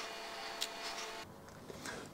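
DSLR camera shutter firing: two short clicks, one at the start and one a little over half a second in, over a faint steady hum.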